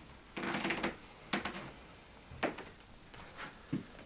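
Light handling noises: a short rattle about half a second in, then a few scattered sharp clicks.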